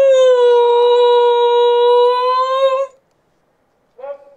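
A Shiba Inu howling: one long, steady, level-pitched howl that breaks off suddenly about three seconds in.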